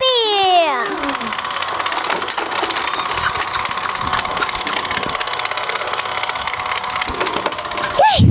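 A small battery-powered toy motor whirs steadily with a fine, fast rattle. In the first second a child's voice slides down in pitch.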